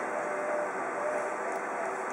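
Colour multifunction copier running a copy job: a steady whir with a faint hum.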